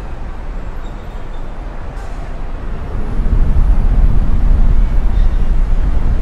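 A loud, low rumbling noise with no clear pitch, swelling about three seconds in.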